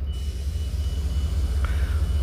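A steady low rumble with a faint, thin high tone over it, between pauses in speech.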